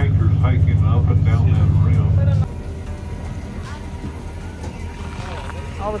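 Shuttle bus running, heard from inside the cabin as a steady low drone with passengers talking over it. It cuts off abruptly about two and a half seconds in, leaving quieter voices of people in the open.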